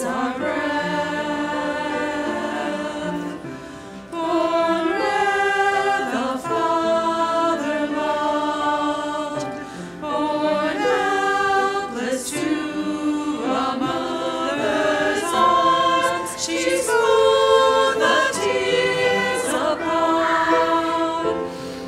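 A choir of mixed voices singing, the phrases held and shifting in pitch, with brief dips between phrases about four seconds in and again about ten seconds in.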